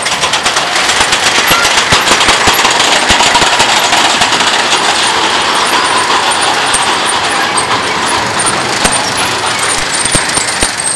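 Steel roller coaster cars running along the track close by: a loud, steady rumble and rattle of wheels on steel rail, with rapid clicking throughout. It jumps up in loudness right at the start as the cars come near.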